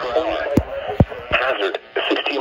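Weather radio's automated voice reading a severe thunderstorm warning through the radio's small speaker, with three sharp knocks in the middle.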